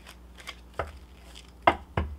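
A tarot card deck being handled: a few short, sharp taps, one a little under a second in and the loudest near the end.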